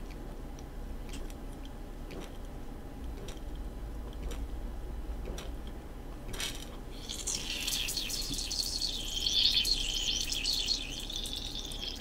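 Carbonated melon soda in a glass Ramune bottle with a marble stopper, sloshing and being swallowed as the bottle is drunk from, with a few faint clicks early on. From about seven seconds in a louder, high, wavering sound sets in, fading out near the end.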